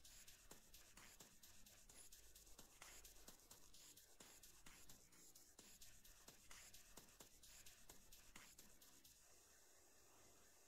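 Near silence with faint, irregular clicks and ticks that stop about eight and a half seconds in.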